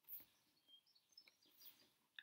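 Near silence, with a few faint, short, high bird chirps and soft taps of tarot cards being laid on a table.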